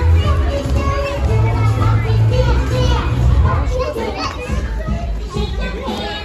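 A crowd of young children's voices shouting and chattering over dance music with a heavy bass line.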